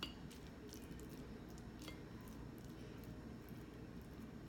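Faint, scattered clicks and light scrapes of a metal fork against a white bowl as it moves through rice, over low room noise.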